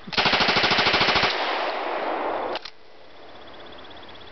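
Thompson submachine gun firing one full-auto burst of about a second from its drum magazine, at roughly a dozen shots a second. The shots echo back and die away over about another second.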